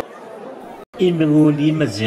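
A low hubbub of crowd voices, cut off abruptly by an edit just under a second in. Then a man's voice comes in loud, holding long steady notes, in the manner of chanting or singing.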